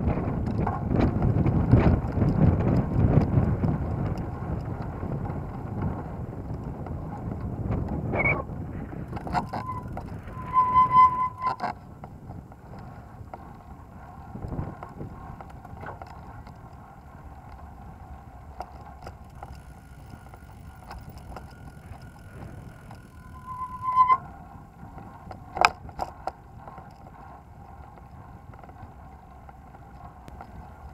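Riding a recumbent cycle over a paved promenade: wind buffeting the microphone and a rolling rumble, loud for the first ten seconds and then quieter. There are two brief high tones, one about eleven seconds in and one near twenty-four seconds, a few sharp clicks, and a faint steady hum in the later part.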